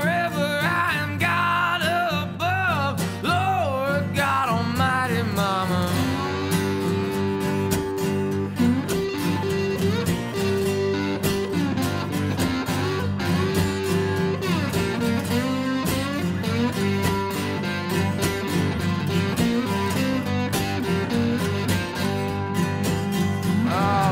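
Instrumental break of a country-blues song: a strummed acoustic guitar and an electric guitar, with a wavering harmonica melody over the first few seconds.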